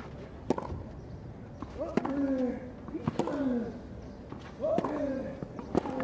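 Tennis rally on a clay court: about five sharp racket strikes on the ball, a second or more apart, most of them followed by a short grunt that falls in pitch from the player hitting.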